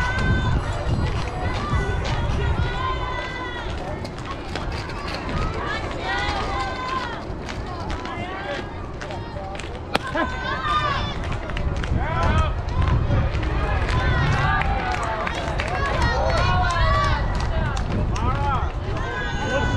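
High-pitched voices of softball players and spectators calling and chattering across the field throughout, over a steady low rumble. A single sharp knock comes about ten seconds in.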